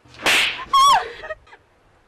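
A short rushing whoosh, then a high wavering cry with a strong pitch that falls away, all within about a second.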